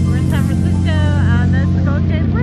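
Steady low drone of a tour boat's engines running under way.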